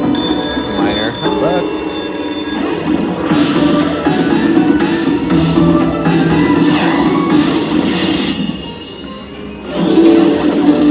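Video slot machine's bonus sounds: a ringing chime as a jackpot pick is revealed, then a win jingle with busy music. The music dips briefly near the end before coming back louder.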